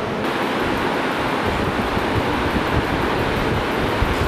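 Air buffeting the camera microphone: a steady hiss with an uneven low rumble that grows stronger after about a second and a half.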